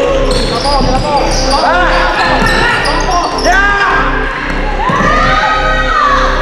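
Basketball game sounds in a gym: sneakers squeaking on the hardwood court and the ball bouncing, with voices echoing around the hall. A steady low hum runs underneath.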